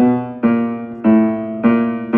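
Upright piano keys struck one after another, about two a second, each note ringing on into the next. The notes are played to check the dampers as they lift with the pedal, where undamped ringing is the sign of dampers lifting early.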